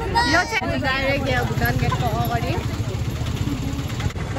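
A small vehicle engine idling close by with an even low pulse, under people talking.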